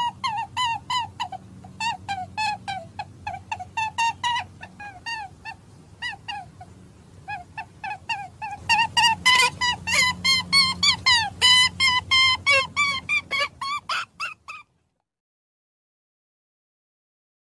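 A small animal squeaking in a rapid series of short, high calls, several a second, played as the rabbit's sound. The calls get louder past the middle and cut off suddenly about three-quarters of the way in, over a steady low hum.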